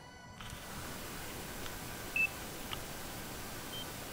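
Steady hiss with two short, high electronic beeps, one about two seconds in and a fainter one near the end, and a couple of faint clicks.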